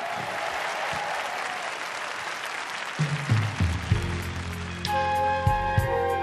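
Studio audience applauding, then about three seconds in a live orchestra begins a song's introduction: low held bass notes first, with higher sustained chords joining near the end.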